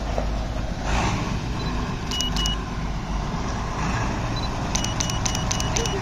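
A motor vehicle's engine running with a steady low rumble. A few sharp clicks with a short high beep come about two seconds in, then a quick run of them near the end.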